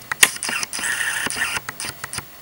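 Camera handling noise: a run of sharp clicks and a short mechanical whir as a hand reaches over and grabs at the camera.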